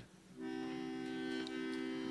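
Harmonium sounding a steady sustained chord, coming in about half a second in.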